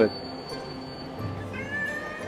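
Cat meowing played from the speakers of a giant 3D calico-cat street billboard, with music.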